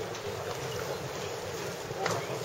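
Steady outdoor ballpark background noise with wind on the microphone, no distinct event standing out.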